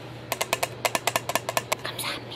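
A quick, uneven run of about fifteen light, sharp clicks over roughly a second and a half.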